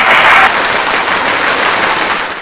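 Applause sound effect played as the correct quiz answers are revealed: a steady clapping-like noise, loudest in the first half second.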